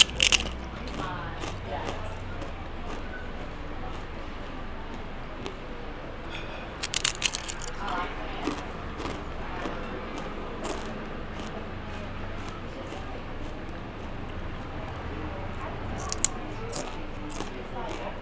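Crunching of crisp fried chips being bitten and chewed close to the microphone. There are several loud crunches right at the start, a cluster about seven seconds in, and two more sharp crunches near the end, over a steady low background hum.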